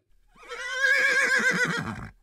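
A horse whinnying once, starting about half a second in: one long, quavering neigh.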